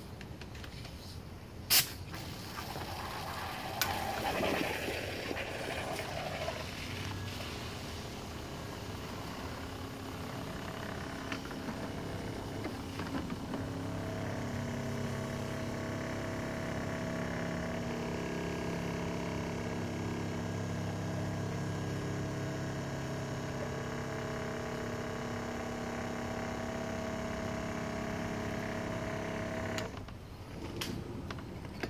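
Aircrete foam generator running and pushing fresh foam out through a hose into a bucket. There is a sharp click about two seconds in and a rougher rush for a few seconds as the foam starts. From about fourteen seconds it settles into a steady hum with several tones, which stops suddenly at the end.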